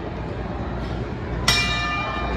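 A boxing ring bell struck once about a second and a half in, its ring lingering afterwards; it signals the start of a round. Steady crowd noise in a gym hall underneath.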